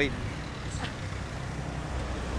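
City street traffic: a steady low rumble of passing cars and a bus engine.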